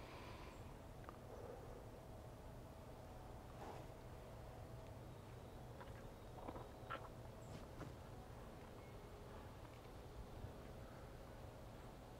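Near silence: quiet outdoor ambience with a low steady hum and a few faint, brief ticks and small sounds.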